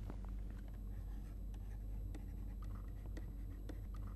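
Stylus writing on a pen tablet: a run of light taps and scratches as letters are written, over a low steady hum.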